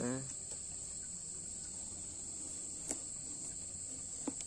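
Kitchen knife cutting down through the rind of a golden melon, quiet apart from one sharp crack about three seconds in; the fruit is fairly crunchy. Steady high chirring of insects underneath.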